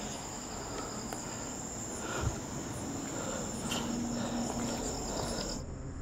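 Crickets trilling steadily at a high pitch, with faint scuffs and a soft knock about two seconds in; the trill stops shortly before the end.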